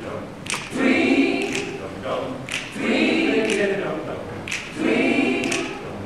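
Mixed high school choir singing a cappella, a phrase swelling and repeating about every two seconds, with short sharp accents between the phrases.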